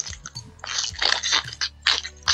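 Pokémon trading cards and booster-pack wrappers being handled: several short rustling scrapes.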